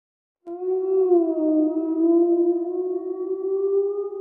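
An eerie wailing sound effect: one long, steady tone that starts about half a second in and holds, its pitch wavering slightly.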